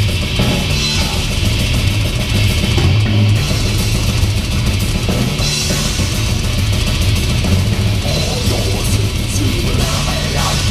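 Live heavy metal band playing: electric guitar, bass guitar and drum kit together, loud and continuous with cymbals washing over the top.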